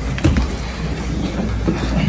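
Steady low rumble of gym room noise with irregular scuffing and rustling as two grapplers move against each other on the training mats.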